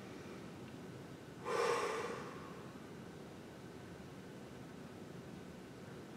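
One audible deep breath from a man, about a second and a half in, rising quickly and fading within under a second, over faint steady room tone.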